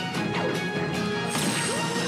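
Soundtrack of an animated action scene: a steady, held dramatic score with crashing sound effects mixed in.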